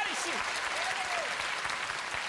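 Audience applauding.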